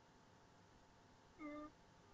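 Near silence: room tone, with one short pitched sound, falling slightly, about a second and a half in.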